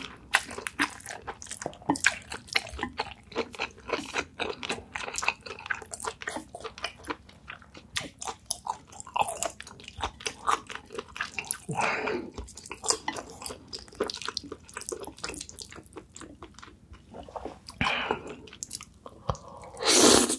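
Close-miked wet chewing and lip-smacking of black bean noodles and spicy stir-fried baby octopus: a fast, steady run of sticky clicks, with a longer slurp about twelve seconds in, another a little before the end, and a loud slurp of a new mouthful at the very end.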